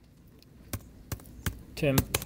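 Computer keyboard keys clicking as a few characters are typed, about four separate sharp clicks spread a third to half a second apart, with a short vocal sound near the end.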